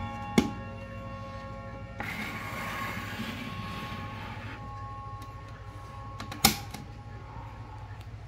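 Gong rods of a Wuba mini mantel clock with a Schatz movement ringing out and slowly fading after its three-gong, three-hammer 'ping pong' strike. Two sharp clicks come through the ringing, one just after the start and a louder one about three-quarters of the way through, with a stretch of rustling noise in between.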